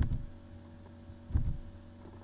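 Steady electrical mains hum from the recording setup, with two short low thumps, one at the start and another about a second and a half in.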